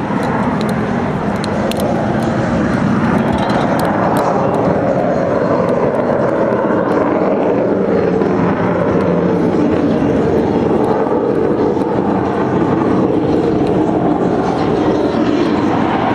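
Jet engines of the Blue Angels' F/A-18 Hornets flying in a four-plane diamond: a loud, steady jet noise whose pitch slowly sinks through the middle seconds. A few faint clicks sound in the first few seconds.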